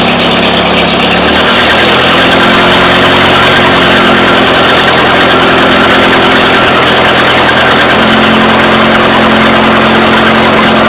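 1945 Farmall H's four-cylinder gasoline engine running steadily, driving the newly fitted 12-volt alternator, which is charging the battery. The engine note shifts up about one and a half seconds in and changes again near the end.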